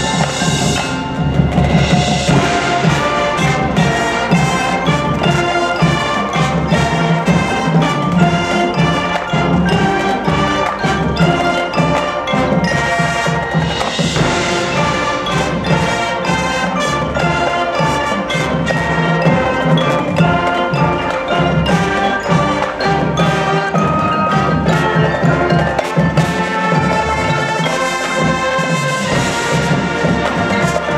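High school marching band playing, with the front ensemble's mallet percussion (marimba, glockenspiel and chimes) prominent among the winds and drums.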